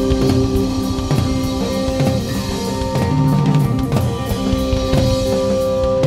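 Live rock band playing an instrumental passage without vocals: busy drumming with bass drum, snare and cymbal hits over sustained keyboard and guitar notes and bass.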